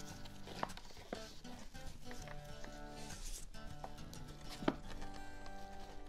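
Soft background music with held notes, over a few sharp light clicks and rustles as the gold ribbon and cellophane wrapping are handled while a bow is tied.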